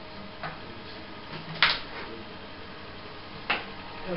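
A few short, sharp clicks: a faint one, then a loud one, then another about two seconds later.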